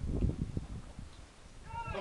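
A low rumble on the microphone in the first half second, then a player's shout from the pitch near the end.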